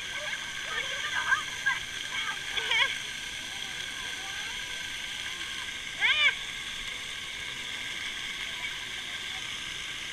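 Splash-pad water jets spraying steadily, with children's voices calling out over it; a short high-pitched shout stands out about six seconds in.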